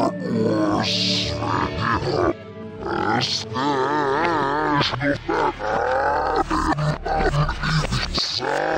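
A cereal commercial's soundtrack, voices and music, played slowed down and in reverse, so it comes out deep, dragged out and warped. About halfway through comes a long warbling held note.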